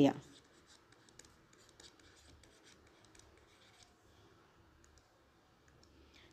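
Faint light ticks and scratches of a stylus writing and drawing on a screen, scattered irregularly, with the tail of a woman's speech at the very start.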